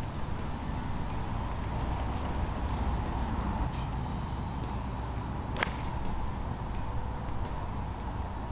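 A single sharp crack of a golf club striking the ball about five and a half seconds in. The contact is a little thin. It sits over a steady low rumble.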